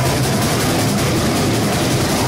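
Metalcore band playing live: heavily distorted electric guitars and bass in a loud, dense, steady wall of sound with sustained low notes, heard through a camera microphone.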